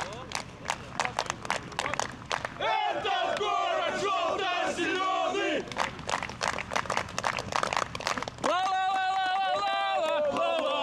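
Crowd of football supporters chanting in unison, held shouted phrases about 3 s and 8.5 s in, with spells of rapid clapping between them.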